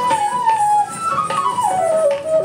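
Indian classical music with a flute melody that bends and glides up and down in pitch over steady percussion strokes, accompanying a classical dance.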